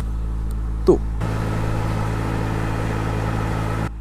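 A steady low mechanical hum, even in level throughout, with one short spoken syllable about a second in.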